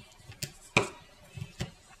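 Small sharp clicks of a metal loom hook and stretched rubber bands against clear plastic loom pegs as bands are lifted up and over, about four clicks, the loudest a little before one second in.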